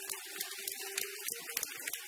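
A congregation applauding: a steady patter of many hands clapping, with a low steady tone underneath.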